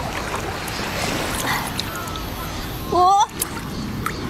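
Steady rushing noise of sea water and wind on a phone microphone. About three seconds in comes one short, high vocal sound from a woman.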